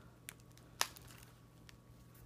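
A few light clicks from handling a zip-around travel wallet and the foam sheet packed inside it, the loudest a little under a second in, over a faint steady hum.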